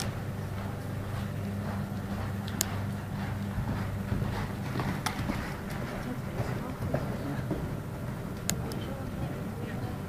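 Indistinct background chatter of spectators over a steady low hum, with a few sharp clicks.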